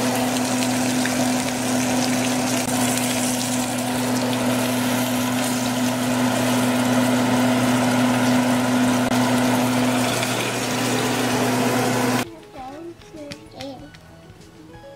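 Steady whirring hiss of a running motor with a constant low hum, while pancakes cook in a pan on the stove. It cuts off suddenly about twelve seconds in, leaving a much quieter stretch with a faint voice near the end.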